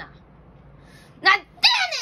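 A boy's voice giving the comic Kansai-dialect retort 'nande yanen!' ('why on earth!') in short, exaggerated cries that fall sharply in pitch. The last cry, near the end, is drawn out.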